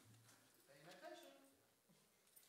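Faint, indistinct speech, quiet enough to be near silence.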